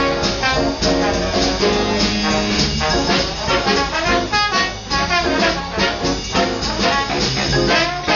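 A live big band playing a swing jazz number with no vocal, the brass section to the fore over drums. Long held horn chords give way after about three seconds to shorter, punchier phrases.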